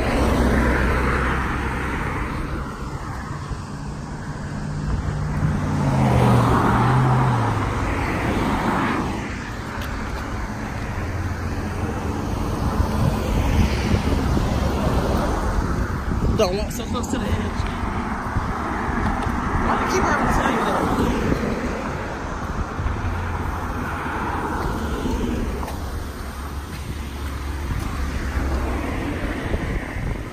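Cars and a pickup truck passing close by on a road bridge. Their tyre and engine noise swells and fades several times over a steady low rumble.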